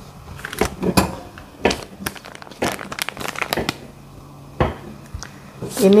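Plastic food packaging crinkling and crackling in short, irregular bursts as it is handled.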